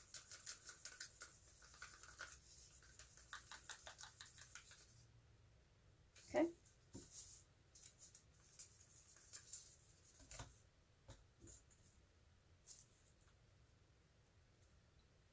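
Wooden craft stick stirring thinned acrylic paint in a plastic cup: a faint quick run of scraping strokes for about the first five seconds. A cup is then set down with a knock about six seconds in, followed by a few light clicks and taps.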